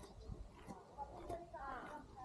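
Faint voices talking at a distance, clearest in the second second, with scattered light footsteps on a concrete path.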